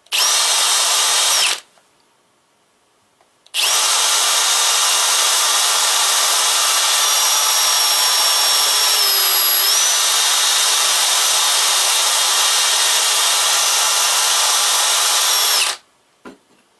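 Cordless drill spinning a steel wire brush against M8 battery-terminal bolts, stripping off blue threadlocker residue. A short run of about a second and a half, a pause of two seconds, then a long run of about twelve seconds, with the motor's whine dipping briefly near the middle.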